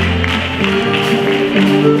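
A full concert band of woodwinds, brass and percussion playing held chords that shift every half second or so.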